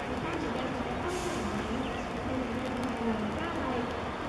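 People chattering around the pitch, several voices overlapping without clear words, with a short hiss about a second in.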